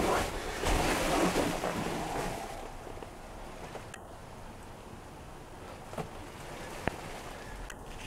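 Rushing, uneven noise on a handheld camera's microphone, loudest in the first two to three seconds, then a faint hiss with a couple of light clicks.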